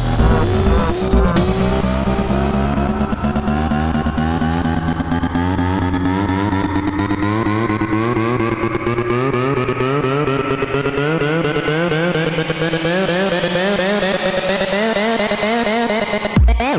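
Dirty Dutch house build-up: layered, wobbling synth tones rise slowly and steadily in pitch, with no steady kick drum underneath.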